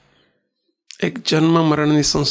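A man's voice speaking into a microphone. It pauses into near silence, then resumes about a second in.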